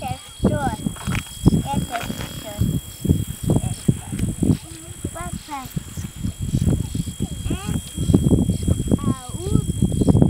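A man's voice speaking in short, broken phrases.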